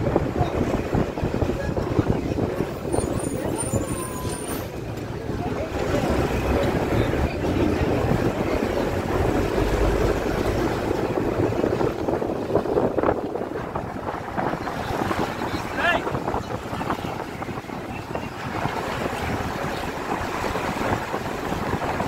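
Steady low rumbling noise of a vehicle running, with wind buffeting the microphone.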